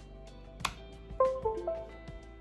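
A USB memory adapter clicks into a laptop's USB port, followed about half a second later by the Windows device-connect chime, a few quick notes stepping down in pitch. The chime is the sign that the repaired port has detected the device.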